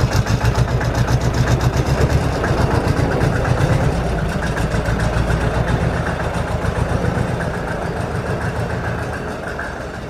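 Hinomoto E23 compact diesel tractor engine running at low speed as the tractor is driven slowly forward, with a steady low pulse that eases off slightly toward the end.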